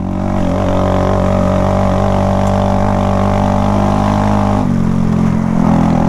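Honda Grom's 125 cc single-cylinder engine running at a steady pitch under way. The engine note shifts slightly about three-quarters of the way through.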